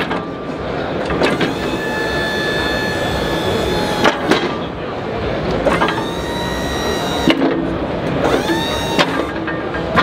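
Electric-hydraulic power unit of an Arctic Razorback articulating snowplow running in two stretches of a few seconds each as the plow's wings and sections move, a steady whine that rises briefly at each start.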